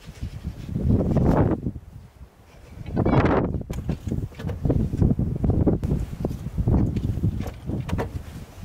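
Snow being shovelled: a snow shovel scraping and pushing snow, with footsteps in snow. There is a long push about a second in, another around three seconds, then a run of shorter, choppy scrapes.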